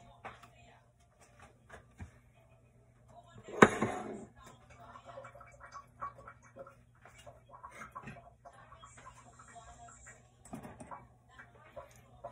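Kitchenware clattering at a sink, with one sharp, loud clatter about three and a half seconds in among scattered small knocks. A steady low hum runs underneath.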